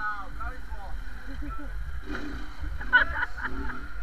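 Men's voices calling out over the low, steady running of a small motorcycle engine as the bike rides off.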